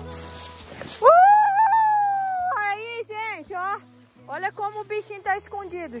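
A woman's high-pitched voice: one long drawn-out exclamation about a second in, the loudest sound, followed by short rising-and-falling syllables in quick bursts.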